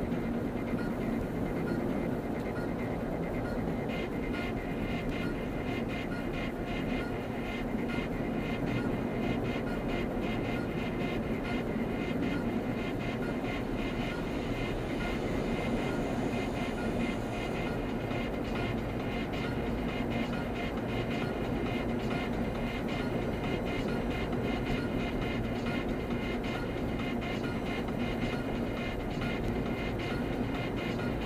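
Steady road and engine noise inside a car cabin at freeway speed, with music playing underneath.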